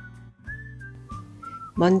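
Light background music carried by a whistled melody of short held notes over soft, plucky bass notes. A woman's voice starts speaking right at the end.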